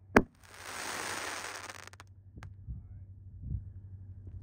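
A Winda Neon Beef 5-inch 60-gram canister shell bursting overhead with one sharp bang, followed by about a second and a half of hiss from the burst. A single further crack comes about two and a half seconds in.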